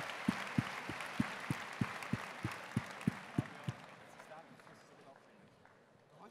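A large audience applauding, with a steady low thump about three times a second under the clapping. Both fade away over the second half.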